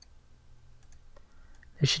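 A few faint computer mouse clicks over a low steady hum, as points are picked and dragged. A man's voice starts near the end.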